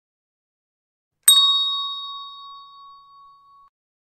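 A single struck bell-like chime about a second in: a bright ding that rings on and fades away over about two and a half seconds.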